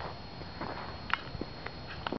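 Footsteps on gravel and grass beside the rails, with rustling from a handheld camera: a few irregular short crunches, the loudest a little past one second in.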